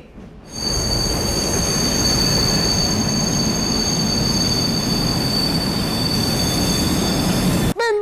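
Steam train braking into a station: a steady, high squeal of wheels and brakes over a loud rumbling rush of noise, starting about half a second in and cutting off suddenly near the end.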